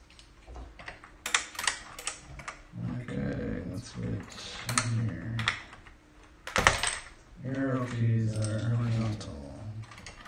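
Plastic keycaps being pulled off an Apple Extended Keyboard II's ALPS switches and dropped onto a pile of loose keycaps: scattered sharp clicks and clatter, the loudest about two-thirds of the way through. A man's low voice murmurs without clear words in three stretches between them.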